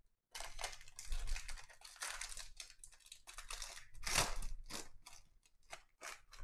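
Plastic-foil trading card pack wrappers crinkling and rustling as packs and stacks of cards are handled, in irregular bursts that are loudest about four seconds in.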